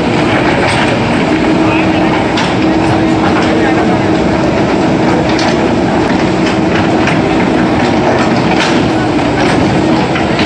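JCB backhoe loader's diesel engine running steadily under load while its bucket digs into broken road asphalt, with scattered scrapes and knocks of the bucket against rubble.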